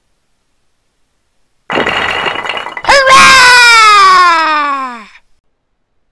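Added cartoon crash sound effect: a burst of crashing, breaking noise about two seconds in, then a sharp hit about a second later. The hit leads into a long tone that slides down in pitch over about two seconds and fades out.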